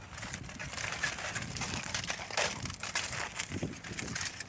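A sheet of aluminium foil crinkling with irregular crackles as it is handled and cut with scissors.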